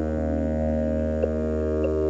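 Ambient electronic synthesizer music: a sustained low drone of steady tones, with a few soft short notes sounding over it.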